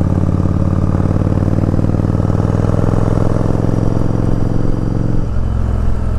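Yamaha Virago 1100's V-twin engine with Vance & Hines exhaust pipes running smoothly under way, heard from the rider's seat. About five seconds in, the note drops.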